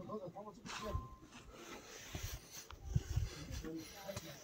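Faint, indistinct voices at the start and again near the end, with a few soft low thumps in between.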